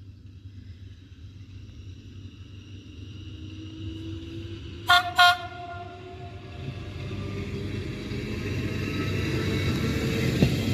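Trenord ALe 582 electric multiple unit approaching, giving two short horn toots about halfway through. Its running noise of wheels on rails and motors grows steadily louder as it draws near.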